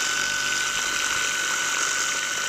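Gloria Multijet 18V cordless medium-pressure cleaner running at its highest stage, about 25 bar, through its rotating dirt-blaster nozzle. The pump motor gives a steady high whine over the hiss of the jet splashing into pool water.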